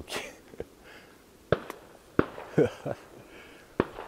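Distant shotgun fire from several hunters around a lake: about five sharp, irregularly spaced shots in four seconds, each with a short echoing tail.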